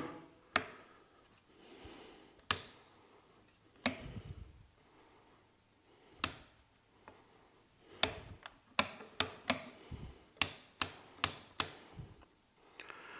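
Bare two-way light switch inserts (Busch-Jaeger 2000/6 US changeover switches) clicking as they are pressed by finger: about a dozen sharp clicks, a second or two apart at first, then about two a second in the second half. The switches are being flipped at both ends to test a two-way lighting circuit.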